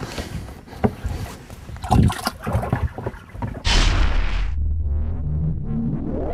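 Knocks and clatter on a bass boat's deck as a caught bass goes into the livewell and the hatch is worked. About two-thirds of the way through, a sudden loud whoosh fades into a steady low hum under a TV graphic transition.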